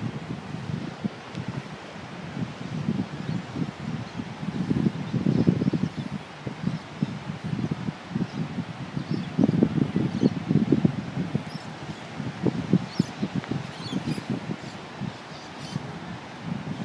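Wind buffeting the microphone in irregular gusts, a low rumbling noise that swells and drops every second or two.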